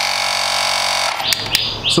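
Portable 12 V electric tyre inflator's compressor running with a steady buzzing hum as it pumps air into a scooter tyre, then switched off about a second in, once the tyre has reached about 38 PSI; a couple of sharp clicks follow.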